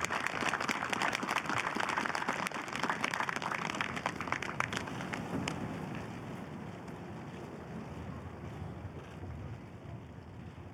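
Applause from the seated outdoor audience dying away over the first five seconds or so, leaving wind noise on the microphone.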